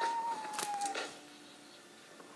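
A woman's muffled, high-pitched squeal into a pillow: one held note sliding slightly down for about a second, with short rustling thumps as she clutches the pillow.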